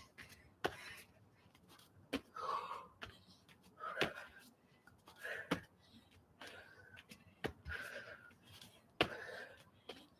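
A woman panting and blowing out hard breaths as she does burpees on an exercise mat. A soft landing thud comes about every second and a half, each followed by a breath.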